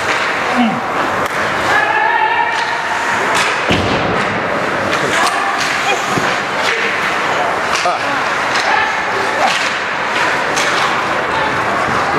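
Ice hockey play along the boards: sticks clacking on sticks and puck, with thumps and slams against the boards and glass over a steady rink din. The loudest is a heavy thump about four seconds in.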